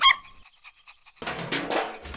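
A cartoon puppy gives one short, high yip at the start. A bit over a second later a clattering, rustling noise begins: the sound effect of an animal rummaging through a trash bin.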